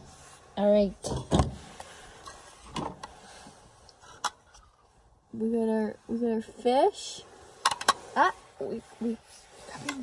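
A person's voice making short wordless sounds, one brief and one longer with a rising glide near the middle, with a few scattered clicks and knocks of handling between them.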